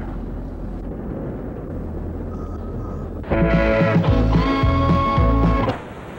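Steady low road and engine noise of a car driving, then a guitar-backed song starts abruptly about three seconds in and is the loudest thing.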